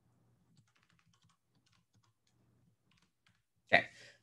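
Faint computer keyboard typing: a scattering of soft key clicks as a short command is typed, followed by a spoken "okay" near the end.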